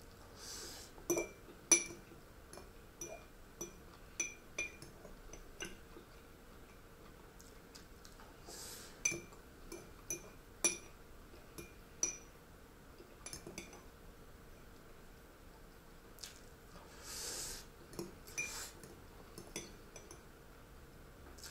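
A metal spoon clinking against a small ceramic bowl as someone eats from it. There are short ringing clinks at irregular intervals, often in quick runs of two or three, and the loudest comes about two seconds in.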